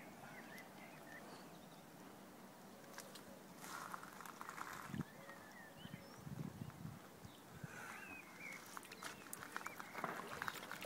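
Soft sloshing of shallow water as a large wels catfish is held and then released to swim off, with a few faint bird chirps and one small knock about five seconds in.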